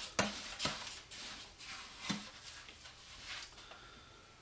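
Steel trowel scraping and scooping a stiff, drier mortar mix inside a plastic bucket: a handful of short, irregular scrapes.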